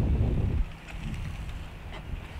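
Wind rumbling on the microphone, loud for about the first half-second and then dropping to a faint low rumble with a faint steady hum beneath it.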